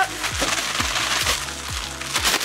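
Takis rolled tortilla chips and granulated sugar being shaken in plastic zip-top bags: a dense, dry rattle and crinkle. Background music with a steady beat plays underneath.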